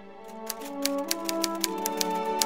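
Typewriter keystroke sound effect, a quick irregular run of sharp clicks about five a second, starting about half a second in as on-screen text types out. Under it, background music with held notes that step upward.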